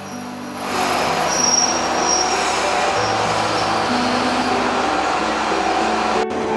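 A Jōsō Line diesel railcar running along a station platform. It makes a steady rush and rumble of wheels on rail that swells about a second in and holds, over background music.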